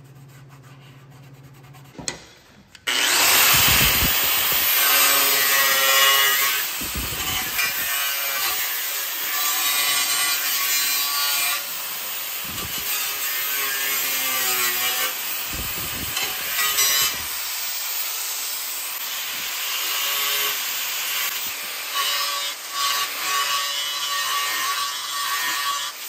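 Angle grinder with a thin cutoff wheel cutting along a crack in an aluminum water tank, opening the crack up for re-welding. It starts about three seconds in and runs steadily, its loudness rising and dipping as the wheel bites.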